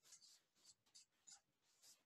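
Faint scratching of a felt-tip marker writing on flip-chart paper, a quick series of short strokes.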